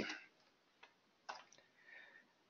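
Faint computer keyboard keystrokes: a few isolated clicks, the clearest about a second in, as parentheses are typed.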